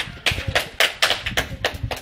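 A few people clapping their hands in a short, uneven round of applause, the sharp claps coming in an irregular patter and stopping just before the end.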